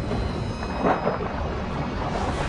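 Breaking surf: a steady low, rumbling wash of churning sea water.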